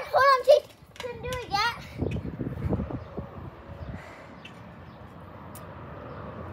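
A young girl's high-pitched squealing calls, two short gliding bursts in the first couple of seconds, followed by a few dull low thuds of bouncing on a trampoline mat.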